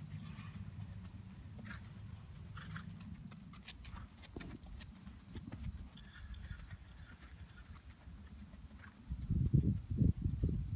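Hoofbeats of a ridden horse on a gravel arena, heard as scattered sharp ticks over a steady low rumble. A much louder low rumble comes in near the end.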